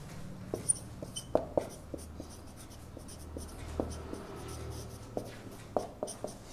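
Marker pen writing on a whiteboard: irregular light taps and short strokes of the tip against the board, over a faint low hum.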